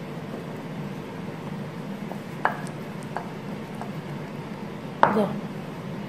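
A few light clicks of chopsticks against a ceramic bowl holding floured chicken drumsticks, with a louder knock near the end, over a steady low background hum.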